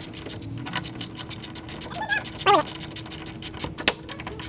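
Hand ratchet wrench clicking rapidly as a bolt is cranked in and snugged up on a tailgate-assist bracket. A brief whining vocal sound comes about two seconds in.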